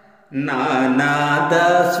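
Telugu devotional bhajan: the tail of a held note fades out, then about a third of a second in a male voice comes in singing a long, held line over steady musical accompaniment.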